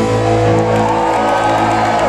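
Live rock band's electric guitars holding a sustained chord through their amplifiers, with long ringing feedback tones and no drumbeat: the closing chord of the song ringing out.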